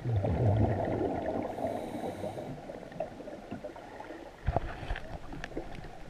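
A diver's exhaled breath bubbles underwater, a loud burst of rumbling and crackling for about a second and a half, then fading to a low crackle. A few sharp knocks come about four and a half seconds in.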